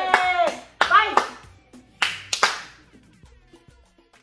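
A family cheering and clapping: a drawn-out shout breaks off, short calls follow, then a few sharp hand claps, the last three close together about two seconds in.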